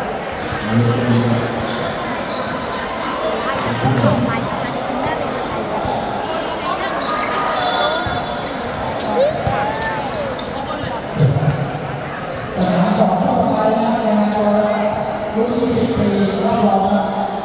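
Basketball game on a hard court: the ball bouncing, with scattered sharp knocks, under players' and spectators' voices that grow louder near the end.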